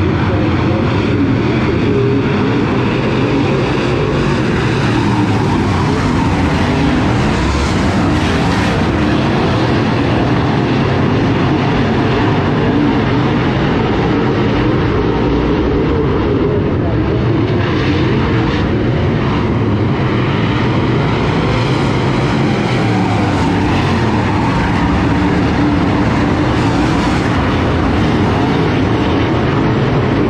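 A field of DIRTcar UMP Modified race cars' V8 engines running around a dirt oval, a continuous loud engine sound that swells several times as cars come by.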